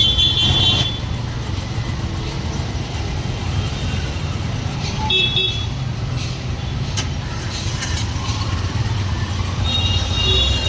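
Street traffic running steadily, with short vehicle horn toots at the start and again about five seconds in. There is a single click about seven seconds in.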